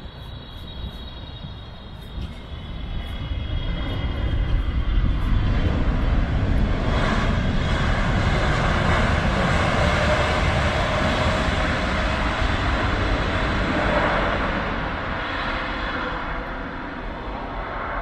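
Boeing 777-200LR's twin jet engines during a landing. The engine noise swells over the first few seconds, stays loud for about eight seconds while the airliner is on and rolling down the runway, then eases off.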